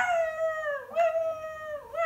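A woman's voice imitating a baby crying: wailing cries of about a second each, high-pitched and dropping in pitch at the end of each.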